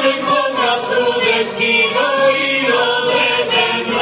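Uruguayan murga chorus of about a dozen men and women singing loudly together into stage microphones, amplified through the PA.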